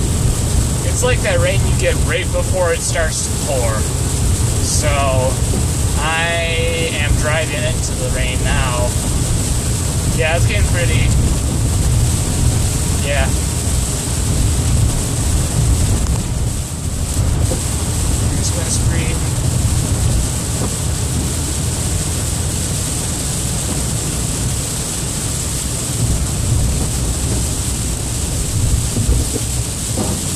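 Car running along a wet road, heard inside the cabin: a steady engine and tyre rumble with the hiss of tyres on wet pavement. A faint voice is heard over it in the first ten seconds or so.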